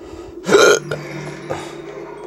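A short, loud burp close to the microphone about half a second in, over the steady music of a film soundtrack playing from a television. A small click follows about a second later.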